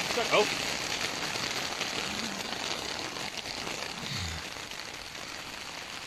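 Steady rain falling on a tent: a continuous hiss that eases slightly towards the end.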